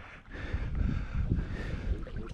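Wind buffeting the microphone: an uneven low rumble that rises and falls in gusts.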